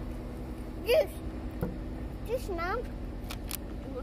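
A small child's short high-pitched vocal sounds, twice, over the steady hum of an idling car engine, with a few light clicks near the end.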